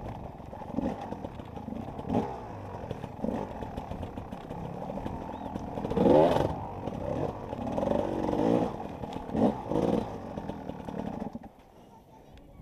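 Enduro dirt bike engine revving up and down in short bursts as it is ridden over a muddy course, loudest about halfway through. The engine sound drops away abruptly just before the end.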